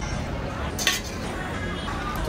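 A stainless steel serving tray clinks once, a little under a second in, as it is handled over the steady hubbub of a restaurant.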